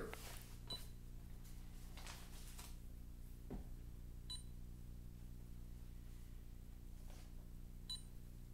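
A small handheld ghost-hunting device beeping: three short, high electronic beeps evenly spaced about three and a half seconds apart, over a faint steady low hum.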